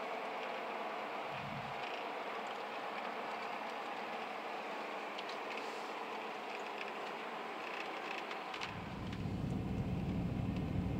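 Steady road noise of a car driving on pavement, heard from inside the cabin: a rushing of tyres and engine. There is a short low thud about a second and a half in, and near the end a deeper, louder rumble sets in.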